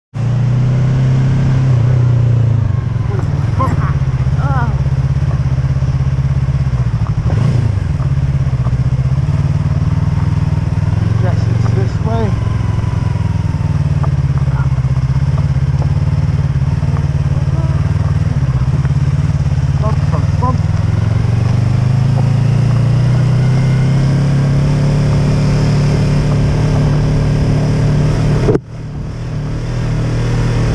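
Yamaha YZF-R3's 321 cc parallel-twin engine running steadily under way at road speed, its pitch shifting a little up and down with the throttle. The sound drops away suddenly for a moment near the end.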